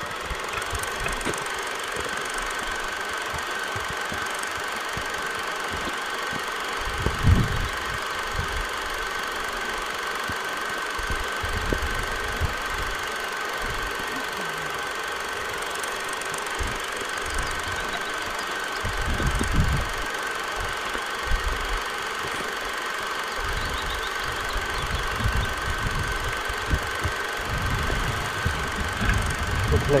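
Wind buffeting the microphone outdoors, a steady rushing with low rumbling gusts, the strongest about seven seconds in and again around nineteen to twenty seconds.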